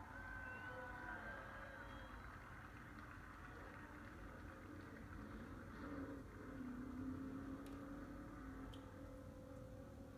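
Faint engine of a NASCAR Cup race car running, heard through a television's speaker, with a low steady engine note that grows a little stronger past the middle.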